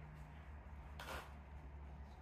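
Quiet room tone with a low steady hum, and one faint soft rustle about a second in.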